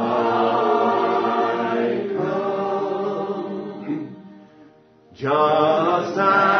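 Slow singing in long held, wavering notes. It fades out about four seconds in and starts again a second later.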